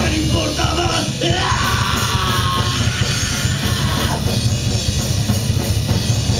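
A live rock band playing loud, with drum kit, electric guitar and bass guitar.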